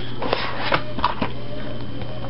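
A plastic DVD case and its gel slipcover being handled and opened: a short rustle, then a few light clicks.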